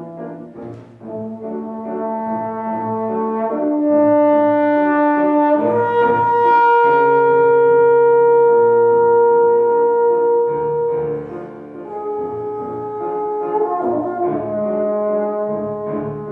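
Trombone with piano accompaniment playing a slow melodic passage of sustained notes. It swells to a long, loud held note in the middle, then falls back to softer phrases.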